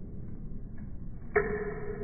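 A sudden pitched tone starts about a second and a half in, holds steady and slowly fades, over a low background murmur.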